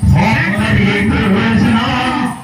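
Devotional kirtan music: singing with instrumental accompaniment over a steady low drone.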